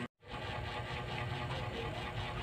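Steady low background hum and noise with no clear event, after a brief dropout to silence right at the start.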